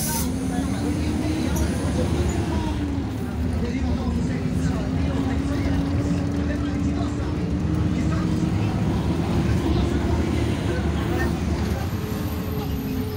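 City bus running from inside the cabin: a heavy low rumble of engine and road with a pitched engine and drivetrain hum that rises over the first two seconds, dips about four seconds in, then climbs slowly again as the bus changes speed.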